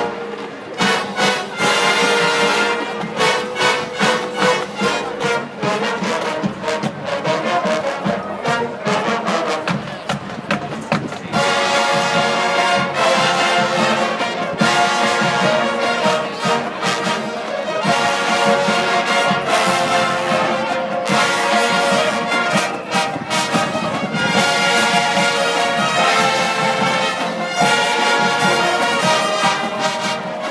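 High school marching band playing live, with brass over a drumline and front-ensemble percussion. The first ten seconds or so are choppy, punctuated hits, and from there the playing turns fuller and more sustained.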